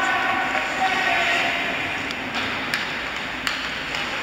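Ice hockey play: skates scraping the ice in a steady hiss, with voices calling in the first second or so and a few sharp clacks of sticks on the puck in the second half.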